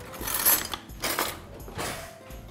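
Metal spoon stirring mashed potatoes in a glass bowl: three scraping strokes about two-thirds of a second apart.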